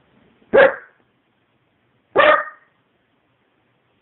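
A dog barks twice, two short barks about a second and a half apart.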